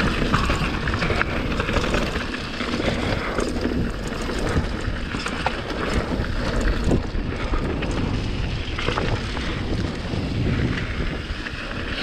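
Wind buffeting the microphone and mountain-bike tyres rolling fast over a dirt and stony trail, with frequent small rattles and knocks from the bike over rough ground.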